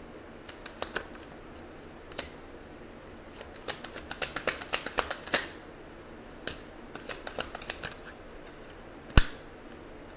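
Tarot cards being handled and dealt onto a wooden table: scattered light clicks and snaps of card on card, busiest in the middle, and one sharp slap of a card going down about nine seconds in.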